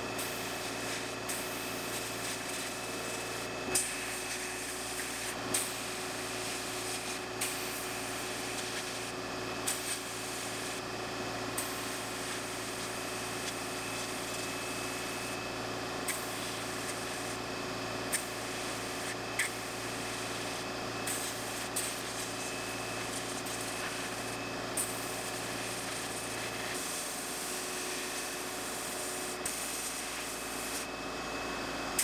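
Media blast cabinet in use: a steady hiss of air and abrasive from the blast gun stripping small pressed-steel toy truck parts, with scattered sharp ticks. A low hum runs underneath and drops away near the end.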